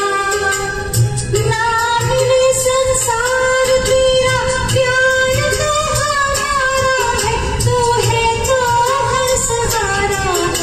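A woman singing a Hindi film song into a microphone over a karaoke backing track with a steady beat, holding long, gliding notes.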